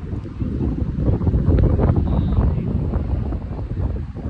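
Wind buffeting the phone's microphone: a loud, uneven low rumble that swells through the middle.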